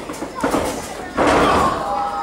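A wrestler's body slamming onto the wrestling ring's canvas: a lighter knock about half a second in, then a loud slam a little over a second in that rings on briefly, with crowd voices over it.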